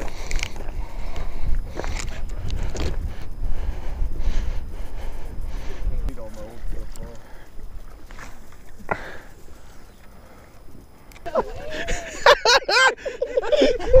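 Wind buffeting the camera microphone, a low rumble that eases after about six seconds, with a few sharp handling clicks. Men's voices come in near the end.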